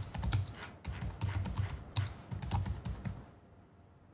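Typing on a computer keyboard: a quick run of keystrokes that stops about three seconds in.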